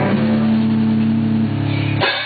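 Rock band playing: distorted electric guitar and bass hold long sustained notes, with a hit on the drum kit at the start.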